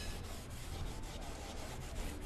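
Cloth rubbing bitumen wax onto a bare wooden picture frame, a soft uneven scrubbing of fabric on wood. This is the wax being worked in to give the frame an aged patina.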